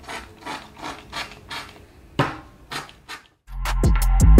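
Hands rubbing hair mousse between the palms and working it through curly hair: short rubbing strokes, about three a second. About three and a half seconds in, music with a drum beat starts.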